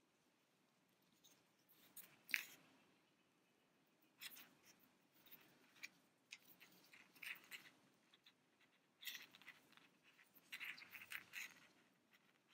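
Near silence with faint, scattered rustles and light scrapes of hands working yarn: tying yarn ends and drawing yarn through a small crocheted piece with a yarn needle, with one sharper tick about two seconds in.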